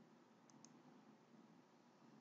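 Near silence with two faint computer mouse clicks in quick succession about half a second in.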